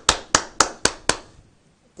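Hands clapping: five sharp, evenly spaced claps about four a second, stopping just after a second in.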